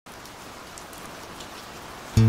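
Steady rain falling: an even hiss with faint scattered drop ticks.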